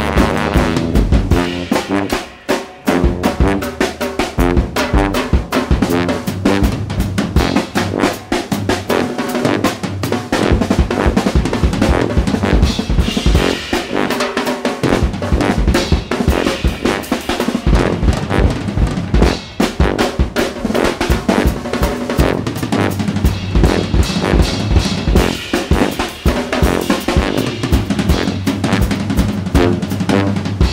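Instrumental jazz with a drum kit playing busily throughout: quick snare hits, rimshots and rolls with bass drum, over a low-pitched bass line that steps between notes.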